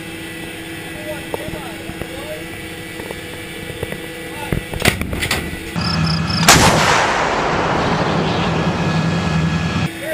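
A 155 mm self-propelled howitzer fires a single loud shot about six and a half seconds in. Its boom rumbles and echoes for about three seconds and then cuts off suddenly. Before the shot there is a steady mechanical hum with scattered clicks.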